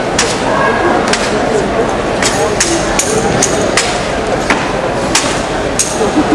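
Sharp slaps and knocks of a drill rifle being caught and struck by hand during exhibition spinning, about a dozen at irregular intervals, over the chatter of a crowd.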